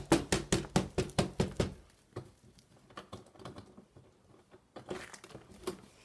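A quick run of sharp knocks and taps, about six a second over the first two seconds, then fainter scattered clicks with a short cluster near the end: handling noise on the handheld recording camera.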